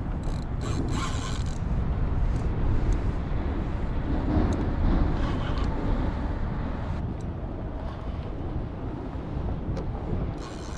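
Wind buffeting the microphone over the clicking and whirring of a fishing reel's mechanism as a hooked fish is played on a bent rod.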